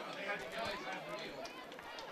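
Faint, indistinct voices of several people talking, not close to the microphone.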